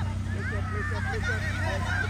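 Many high-pitched voices shouting over one another in short calls, over a steady low rumble.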